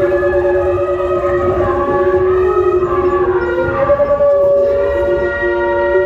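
Live music from Andean wind instruments. Several players hold long, reedy notes in two parallel parts, and the notes shift about two-thirds of the way through.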